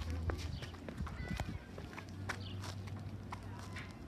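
Footsteps of several people in sneakers and sandals on a concrete walkway, a scatter of short taps and scuffs that thin out as they stop and stand, over a steady low rumble.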